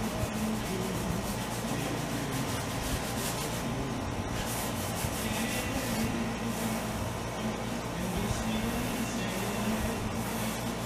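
Acrylic paint being brushed onto canvas: the bristles rub and scrub in repeated short back-and-forth strokes, with music playing in the background.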